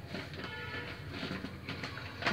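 A notebook page being turned by hand: soft paper rustling with a few faint scrapes, over a low steady room hum.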